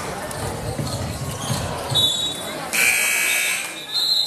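Basketball dribbling and sneaker noise on a gym floor, with crowd chatter, then a short referee's whistle about halfway. The gym horn follows, sounding for just under a second, and another whistle comes at the end.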